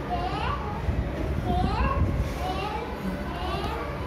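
Young children's high voices talking and calling out, their pitch rising and falling, with no single clear spoken phrase.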